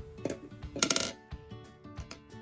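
Handling noise from a plastic, glitter-covered ice cream cone ornament being gripped and turned by hand: a brief rustle, then a louder rustling clatter about a second in. Light background music with plucked notes plays under it.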